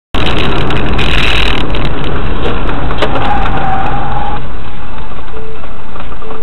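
Loud, distorted road and engine noise from inside a moving car, picked up by a dashcam microphone, with a sharp crash about three seconds in as vehicles collide.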